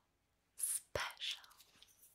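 A woman's soft whisper and breath, starting about half a second in, with a short sharp click about a second in.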